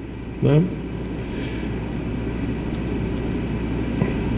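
A man's brief spoken "Né?", then a steady low rumble and hum of room background noise that slowly grows a little louder.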